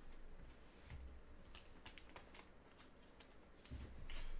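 Near silence: room tone with a few faint clicks.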